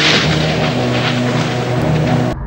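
Rolling thunder sound effect over a held low synthesizer chord, a dense steady rumble of noise on top of the sustained notes.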